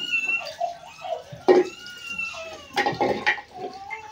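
Water splashing and running as utensils are washed under a hand pump, with a few louder splashes about a second and a half in and around three seconds. Short pitched animal calls come and go alongside.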